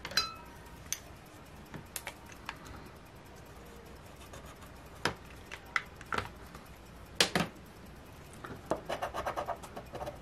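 Light handling sounds on a tabletop: scattered clicks and taps of a marker and a plastic scratcher on a scratch-off lottery ticket, as a number is circled in marker. A quick run of short scratching strokes comes near the end, as the scratcher goes back to the ticket.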